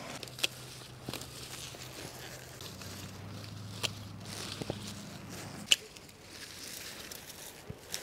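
Hand pruning snips cutting through leafy saponaria stems: about six short, sharp clicks spaced irregularly, with faint rustling of the foliage. A faint steady low hum sits underneath.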